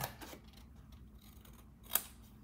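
Small scissors snipping through cardstock to cut a little tab: quiet, faint cuts, then one crisp snip near the end.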